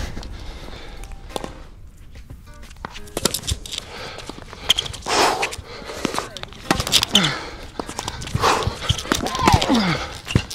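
Tennis ball hit back and forth in a rally, with sharp racket strikes every second or two in the second half, and footsteps on the hard court.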